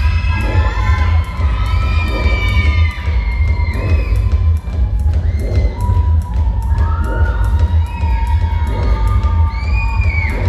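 Dance music with a heavy bass beat plays loudly for a team routine, with a large audience cheering and shouting over it throughout. The sound carries the echo of a big sports hall.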